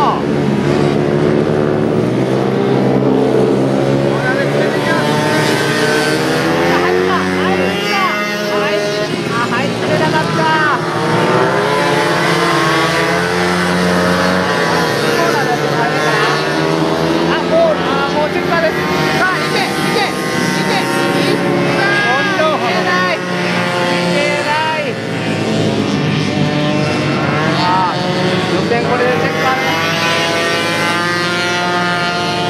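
Several small racing motorcycle engines revving hard as a pack passes through the corners, their pitch repeatedly climbing and dropping with throttle and gear changes, with the sounds overlapping throughout.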